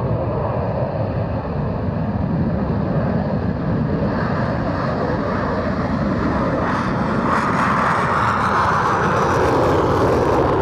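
Twin Pratt & Whitney F119 turbofan engines of an F-22A Raptor running at takeoff thrust during the takeoff roll, a loud, steady jet roar that grows louder and brighter over the last few seconds as the jet passes and lifts off.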